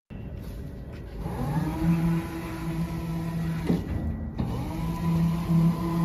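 Electric drive motors of a remote-control wheeled robot base whining steadily as it drives. The whine starts about a second and a half in, breaks off with a click just before four seconds, and resumes shortly after.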